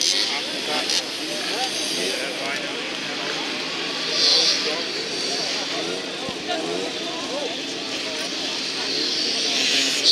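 Small moped racing engines running and revving on a grass track, a steady buzzing drone with wavering pitch, mixed with people talking nearby.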